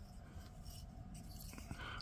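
Faint, light handling noise as small wooden stick-built model wall frames are picked up and moved on a cutting mat, over quiet room tone.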